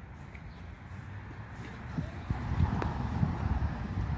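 Footsteps of a person walking across grass, with irregular low thumps and rumble on the handheld microphone that grow louder in the second half, and faint voices in the background.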